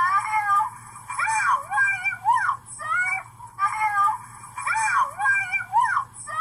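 A high-pitched, thin-sounding voice making a string of short, wordless, meow-like calls that rise and fall in pitch, roughly one to two a second.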